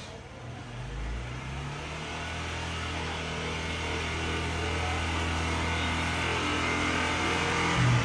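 A motorbike engine running steadily at idle in the alley below, with an even, unchanging pitch and slowly growing louder.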